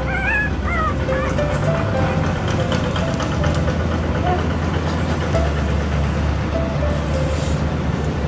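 Newborn puppy giving two short wavering squeals in the first second, over steady background music.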